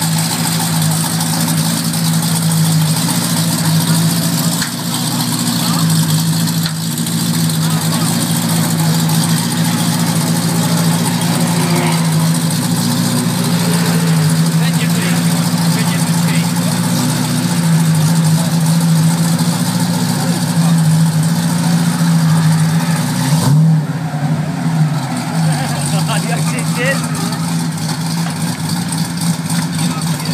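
Chevrolet LS3 V8 in a BMW E30 M3 drift car running steadily at idle, with a short rev that rises in pitch about three-quarters of the way through.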